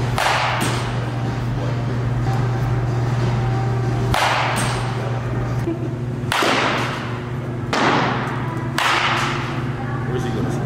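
Baseball bat swung hard through the air about five times, each a short whoosh, with no ball contact heard. A steady low hum runs underneath.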